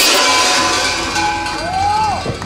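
Large kuker bells (chanove) worn at the waists of a line of mummers, shaken together in a loud, dense metallic clanging with many ringing tones that thins out after about a second and a half. Near the end a single tone rises and then drops.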